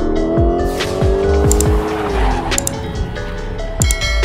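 Intro music with heavy bass and drum hits, mixed with a car sound effect: an engine revving up over the first two seconds, with a tyre-squeal screech. Several sharp clicks come through later, near the end.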